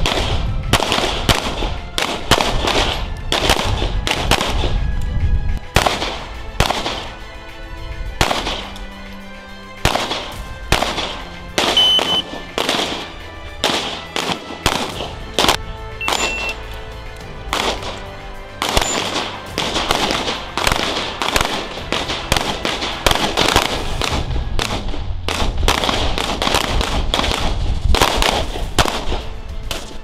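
Handgun shots fired in quick strings, two or three a second, from a shooter working around barricades, with a short lull about eight seconds in.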